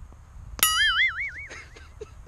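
A golf club strikes the ball with a sharp crack. At once a cartoon 'boing' sound effect rings out, a wobbling tone that fades away over about a second.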